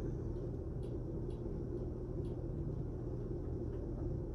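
Steady low rumble of background noise in a small room, with a few faint, short ticks.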